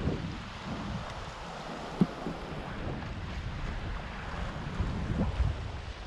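Wind buffeting the microphone in gusts over a steady hiss of shallow sea water, with one sharp click about two seconds in.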